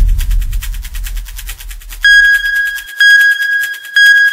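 Edited sound effects. A low rumble dies away under rapid ticking, then three identical electronic countdown beeps sound a second apart, each held almost a second.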